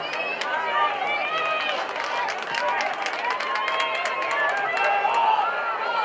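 Players and spectators at a lacrosse game shouting over one another, with frequent sharp clacks of lacrosse sticks striking.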